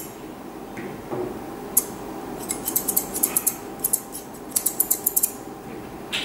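Long steel grooming scissors snipping through a West Highland terrier's head fur: one snip about two seconds in, then several runs of quick snips.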